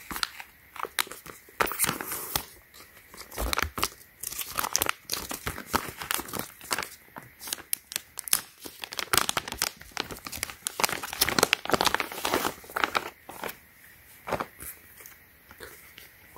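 Plastic packaging crinkling and rustling in many irregular quick crackles as a resealable plastic pouch is opened and an inner plastic sleeve is pulled apart.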